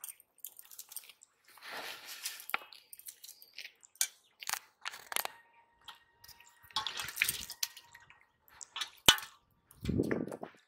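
A small freshly caught fish being handled and unhooked over a steel bowl: scattered wet flaps, drips and rustles of the line. A single sharp knock comes near the end.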